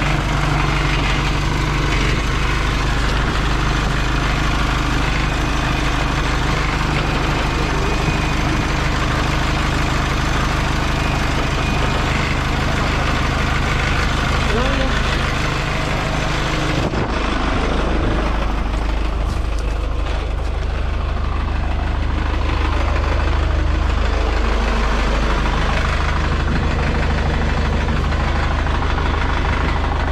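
Diesel engine of a small wheel loader running steadily, heard from the operator's seat. Its sound changes about seventeen seconds in, with the higher part falling away.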